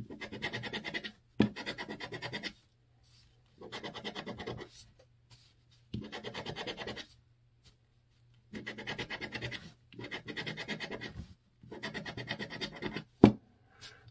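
Coin-shaped scratcher scraping the latex coating off a scratch-off lottery ticket in quick back-and-forth strokes. The strokes come in short bursts of about a second, with pauses between. Two sharp taps fall among them, the louder one near the end.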